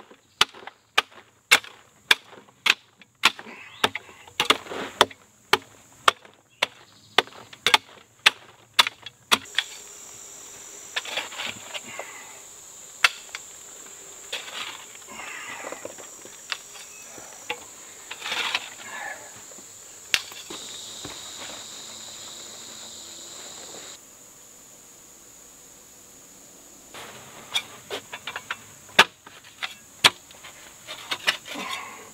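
A short-handled pick striking into packed dirt, about twice a second. Then a short shovel scrapes and tosses out soil while insects buzz steadily at a high pitch. Near the end the pick strikes start again.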